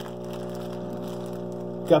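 Steady electrical hum of an aquarium filter motor running, several even low tones held without change.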